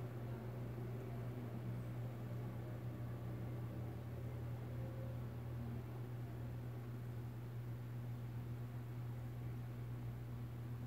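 A steady low hum with a faint hiss behind it, unchanging throughout, with no distinct handling sounds standing out.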